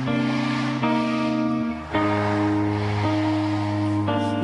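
Live rock band playing an instrumental stretch of held chords over bass, the chord changing about once a second, with a short dip in level just before the two-second mark.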